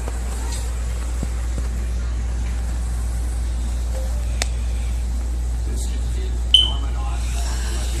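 Steady low hum of room noise, with a few faint clicks. A short, high beep sounds about six and a half seconds in and is the loudest moment.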